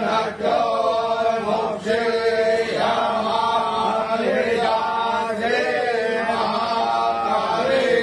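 Hindu devotional chanting of a mantra, sung in long, gliding melodic phrases with short breaths between them.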